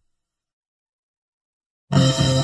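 Dead silence in the gap between two songs. Just before the end, the next song starts abruptly at full volume.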